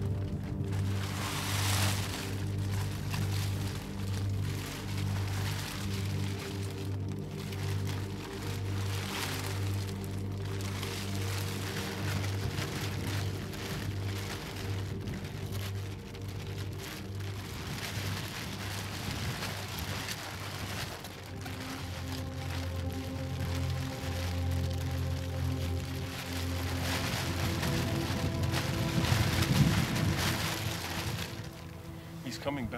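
Background music: a low bass note pulsing about once a second under held tones, changing to a steadier chord about two-thirds of the way through. Under it runs a steady rain-like hiss.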